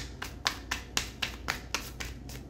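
Tarot cards being flicked through one by one in the hands, a steady series of sharp clicks about four a second.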